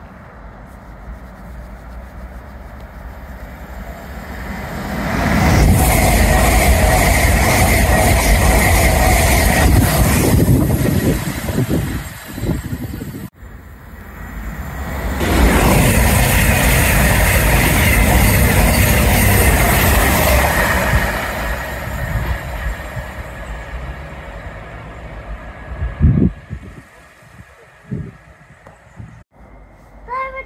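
Two passenger trains passing through the station at speed, each a loud rush of wheels on rail that builds over a couple of seconds, holds for about six seconds and fades. The first is an LNER express, and the second, a few seconds after a break, is a CrossCountry train passing close to the platform. A couple of sharp thumps come near the end.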